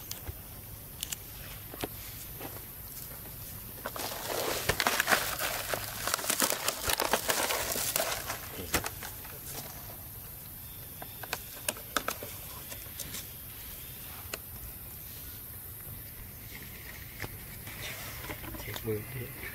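Dry leaf litter crackling and rustling under a baby monkey's hands and feet as it moves over the ground, busiest and loudest for a few seconds in the middle, with scattered single crackles before and after.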